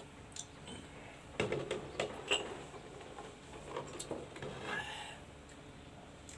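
Faint drinking from a glass mug with a few scattered clicks and soft knocks of glass and ceramic mugs being handled and set down.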